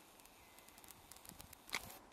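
Quiet forest ambience: a faint hiss with scattered small ticks and crackles, and one louder click near the end.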